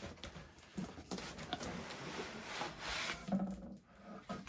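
Cardboard shipping box being opened by hand: the lid and flaps rubbing and scraping, with a few light knocks of handling.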